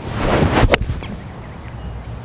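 An iron swung through and striking a golf ball off grass turf. A short rising whoosh ends in one sharp strike about two-thirds of a second in, followed by steady outdoor wind noise.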